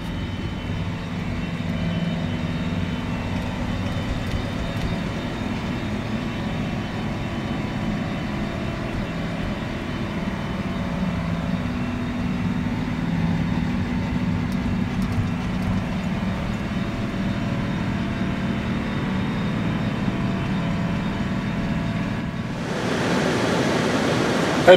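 John Deere R4045 self-propelled sprayer's diesel engine running steadily, heard from inside the cab as a constant low drone with a steady hum. About a second before the end it gives way to an even rushing noise.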